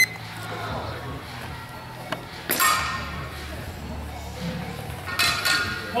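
Steel longswords clashing in a sparring bout: a few sharp metallic clinks with ringing, the loudest about two and a half seconds and five seconds in, echoing in a large hall.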